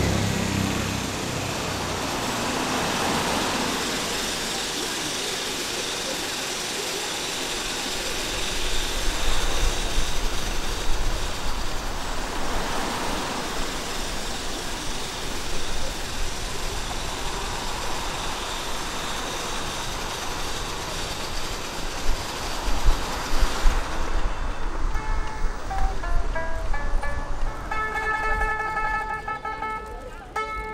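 City street ambience: a steady wash of road traffic with passing vehicles swelling and fading. In the last few seconds it gives way to music with a plucked-string melody.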